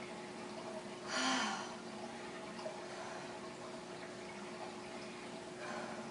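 A person breathing hard between exercise sets: one loud, breathy exhale about a second in and a weaker one near the end, over a steady low hum.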